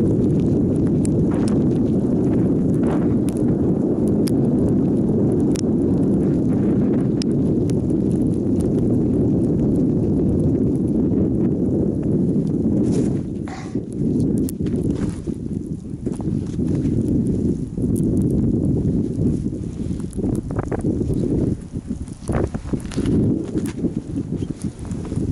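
Bicycle tyres rolling over snow: a loud, continuous low rolling noise with scattered clicks and rattles from the bike. It eases off about halfway through and again near the end.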